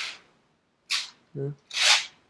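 Sheer curtain fabric rustling as it is pushed aside by hand, in three short swishes.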